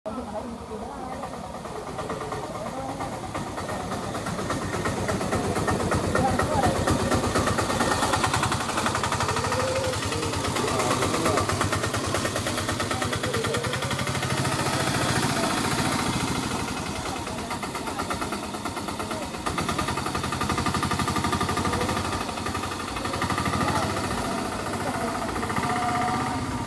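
A vehicle engine idling steadily, with people's voices talking in the background.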